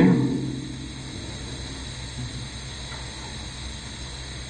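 Steady low hum with faint hiss, the end of a man's spoken word trailing off just at the start.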